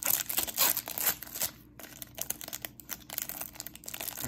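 Plastic wrapper of a Panini Prizm football card hanger pack being peeled open along its crimped seal: a run of crinkling and tearing, loudest in the first second or so.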